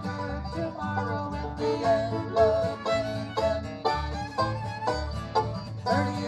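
Live bluegrass band playing an instrumental passage: banjo, acoustic guitar and fiddle over upright bass notes that fall regularly on the beat.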